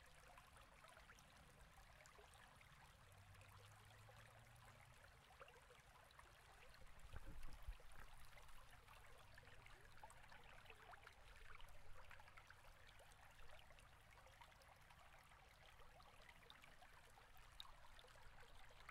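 Near silence: faint steady room hiss, with a couple of soft, brief noises around the middle.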